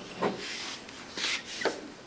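Handmade wooden toy horse and carriage pushed along a tabletop: its wooden wheels roll and rub, with a few short, soft knocks.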